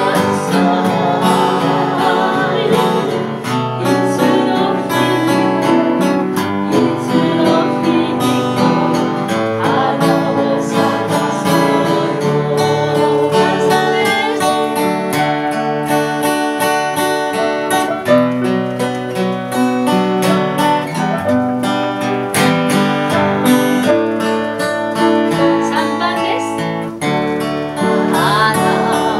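Ensemble music in rehearsal: voices singing a song over instrumental accompaniment, continuing without a break.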